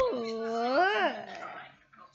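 A long wordless vocal sound, one drawn-out call that slides down in pitch, holds, then rises briefly and fades out about a second in.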